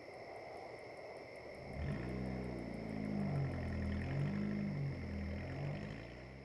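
A faint steady hiss with a thin high whine, then, about two seconds in, a car engine comes in, its low note rising and falling, and eases off near the end.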